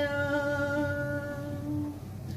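A woman singing Punjabi verse in tarannum, unaccompanied, holding one long steady note at the end of a line. The note fades out just before the end.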